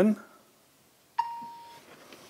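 A single short electronic chime from a smartphone about a second in: a sharp-onset tone that fades away. It is the signal that the endoscope app has started recording.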